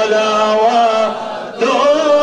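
Men chanting a Sufi devotional chant together in long held notes; the phrase dies away about a second and a half in and a new one starts just after.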